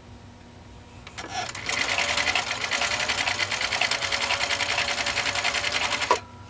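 1951 Husqvarna Viking 21A sewing machine starting up about a second in and stitching at a fast, even rate through four layers of thick commercial-grade vinyl, then stopping near the end. It keeps its speed without bogging down: not even a hesitation.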